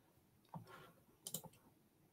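Near silence on an open call line, broken by faint clicks: one about half a second in and a short cluster of two or three just past a second.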